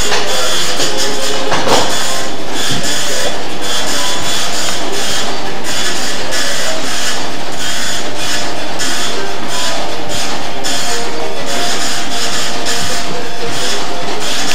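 A computer printer running, a dense, steady mechanical rattle of fast clicks.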